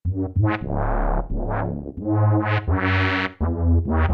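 Novation MiniNova synthesizer playing a sequence of notes while its filter cutoff is swept up and down by incoming MIDI CC data. The tone repeatedly brightens and dulls within each note.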